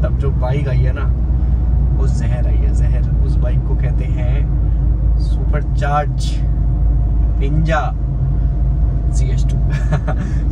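Steady low rumble of a car's engine and tyres heard from inside the cabin while driving, with a man's voice over it.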